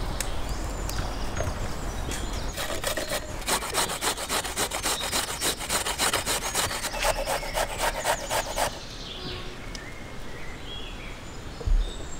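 Carrot being grated on a metal box grater, a run of quick repeated rasping strokes that starts a couple of seconds in and stops about three seconds before the end.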